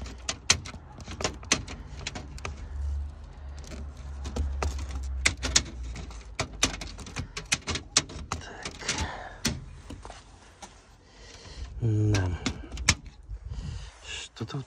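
Scissors cutting a slot in a plastic bumper grille, a run of sharp, irregular snips and clicks.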